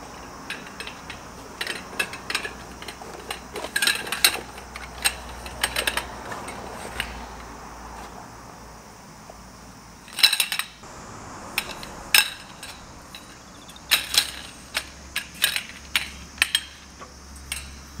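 Aluminium tent pole sections clinking and knocking against each other as they are handled and fitted together, a string of sharp metallic clicks with a louder clatter about ten seconds in.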